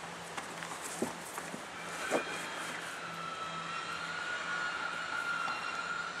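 A large hollow plastic turtle-shaped sandbox being laid down flat on grass: two light knocks about one and two seconds in, over faint outdoor background. A faint steady drone comes in about two seconds in and holds.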